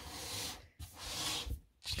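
Closed aluminium MacBook Pro 16-inch being slid and turned by hand on a desk: two short scraping rubs of the laptop's base against the desktop.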